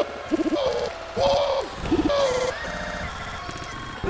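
Chopped, stuttered 'Woo!' shout samples from a wrestling promo, cut up and repeated on a DJ controller, each one arching up and down in pitch. A choppier, quieter stretch follows in the second half.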